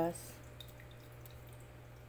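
Faint trickling and dripping of water from a small aquarium's filter over a low steady hum.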